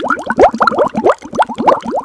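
A rapid string of bubbly 'bloop' sound effects, each a short quick upward-gliding tone, about six or seven a second.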